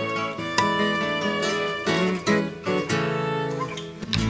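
Instrumental break of an Argentine chacarera: acoustic guitar playing with a violin.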